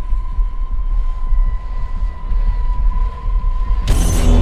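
Horror-trailer sound design: a low throbbing rumble under a steady high-pitched ringing tone. Just before the end, a sudden loud crashing hit cuts it off.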